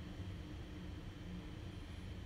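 Steady low hum and faint hiss of room tone, with no distinct events.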